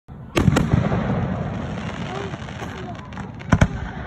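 Aerial fireworks shells bursting: two sharp bangs in quick succession near the start, a lingering rumble after them, then another pair of bangs about three and a half seconds in.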